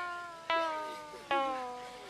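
A run of separate instrumental notes, each struck sharply and fading over most of a second while its pitch sags slightly, coming about one every three-quarters of a second.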